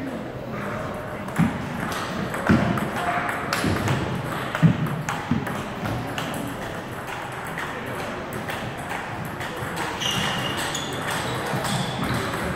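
Table tennis rally: the ball knocking sharply off paddles and the table, with the loudest hits in the first half, over voices murmuring in the hall.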